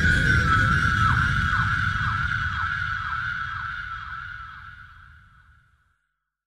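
Electronic dance music fading out at the end of a track. A held high synth tone with short downward swoops about twice a second plays over a low rumble, dying away to silence about five and a half seconds in.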